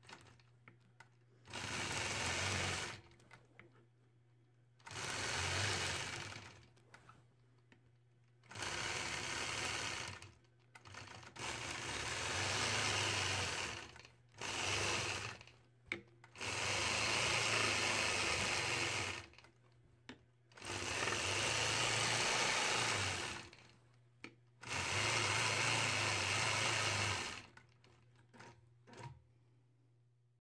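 A longarm quilting machine stitches along a ruler in the ditch around a quilt block. It runs in about eight separate stretches of two to three seconds each, stopping briefly between them.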